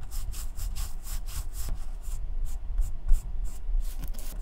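Flat synthetic paintbrush scrubbing wet black fabric dye into a running shoe's fabric upper, in quick repeated strokes, several a second, with bristles rasping on the textured material.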